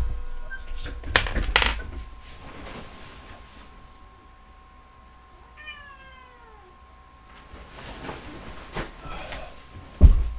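A house cat meows once, a single falling meow about halfway through, asking to be let out of the room. Knocks and rustles of someone moving about come shortly after the start and again near the end.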